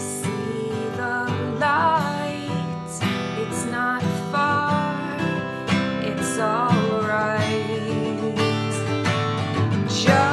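A woman singing with vibrato on held notes over a strummed acoustic guitar: the start of a song's final chorus, sung at forte.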